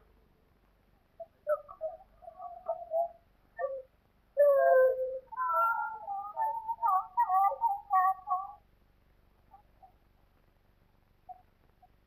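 High-pitched human cries, a run of short wavering wails that break and restart from about a second in until near the nine-second mark, loudest with a longer held cry about four and a half seconds in.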